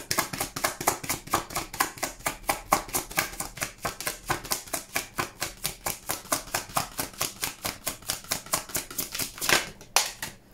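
A tarot deck being overhand-shuffled by hand: a rapid, even run of card slaps and riffles, about five a second, with a louder slap near the end.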